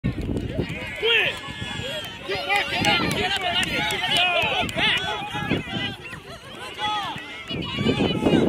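Many voices calling and shouting over one another from spectators and young players on the sidelines. Near the end one voice shouts "Get it."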